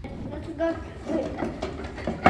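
Wire whisks clicking and scraping against stainless steel mixing bowls as mayonnaise is whisked, with indistinct voices.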